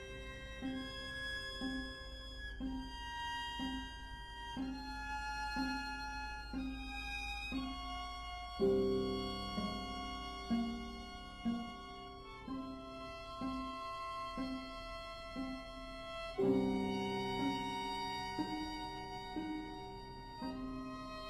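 Piano quartet of violin, viola, cello and piano playing a contemporary classical chamber work: held high string notes that change every second or two over a short low note repeated about twice a second, with louder entries about nine and sixteen seconds in.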